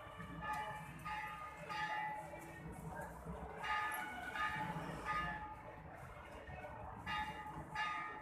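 Busy pedestrian street ambience: a steady low rumble of traffic, with short voices of passers-by rising above it several times.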